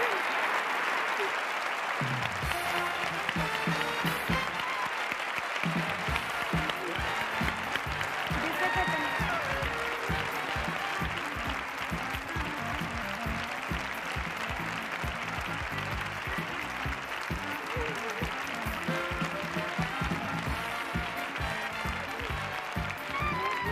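A large audience applauding, with music with a steady beat coming in about two seconds in and running under the clapping.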